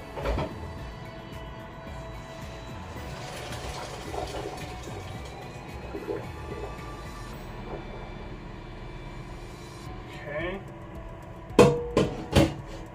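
Water from a pot of boiled macaroni rushing out into a colander in the sink for a few seconds, heard faintly over background music. Two sharp knocks near the end.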